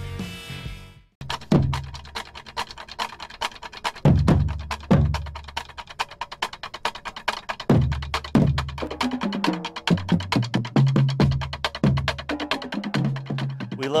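High-school marching band drumline playing a cadence: fast snare-drum strokes with heavy bass-drum and crash-cymbal hits. Low pitched notes join the drumming from about nine seconds in.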